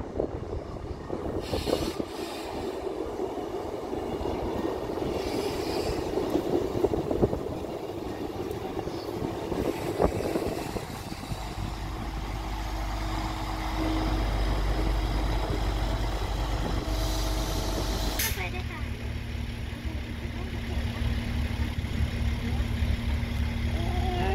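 Locomotive-hauled passenger train passing at low speed, its coaches running by with a steady low rumble of wheels on the rails and a few steady tones, the sound changing suddenly about eighteen seconds in.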